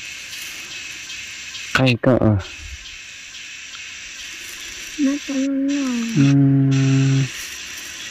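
A woman's voice speaking a few short words and then holding a long drawn-out 'mm', over a steady high-pitched hiss that runs under it.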